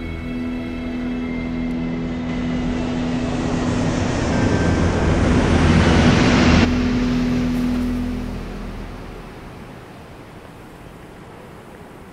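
Jet aircraft flying low overhead: a steady engine whine under a rushing noise that grows louder to a peak about six and a half seconds in. There the rush cuts off suddenly, and the lower drone fades away over the next two seconds.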